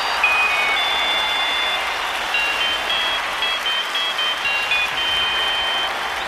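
A two-way pager's alert tune: a string of short high electronic beeps stepping up and down in pitch, over steady crowd noise.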